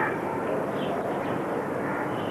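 Steady rushing background noise with no clear tone or rhythm.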